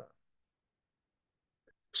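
Near silence: a pause in a man's speech, with the tail of a drawn-out 'uh' at the very start and talk resuming at the end.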